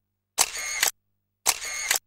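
Camera shutter sound effect, twice, each about half a second long with a sharp click at its start and another near its end, separated by dead silence.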